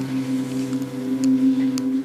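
Background score music: a soft sustained chord held steady, with no melody moving.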